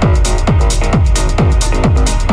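Techno track in a DJ mix: a steady four-on-the-floor kick drum at about two beats a second, each kick falling in pitch, with hi-hats ticking between the beats and sustained synth chords held over them.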